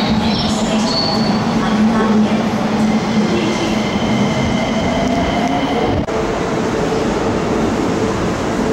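A Keikyū Line electric train running along the station platform: a steady rumble with a low hum, and thin high squealing tones from the wheels in the middle stretch.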